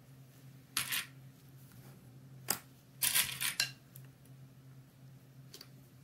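Plastic sewing clips snapping onto the edge of layered knit fabric: a few short clicks with fabric handling, about a second in, again at about two and a half seconds, and a quick cluster around three seconds.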